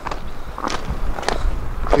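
Footsteps of a person walking outdoors, a step about every half-second, over a low steady rumble.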